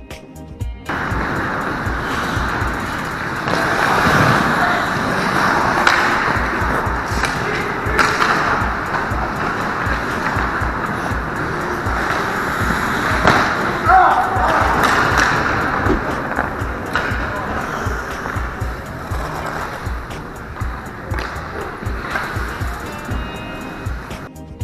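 Live ice hockey rink sound: skates scraping and carving on the ice, with sharp stick-and-puck knocks and players' shouts, over background music with a steady low beat.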